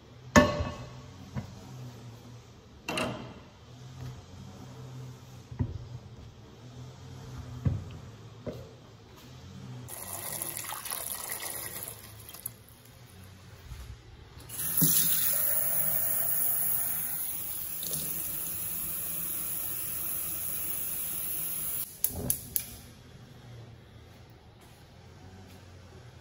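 A metal pot and its lid clattering a few times as it is handled, then water pouring into the pot over peeled green bananas, first briefly, then longer and louder for about seven seconds. The pouring stops suddenly, followed by a few sharp clicks.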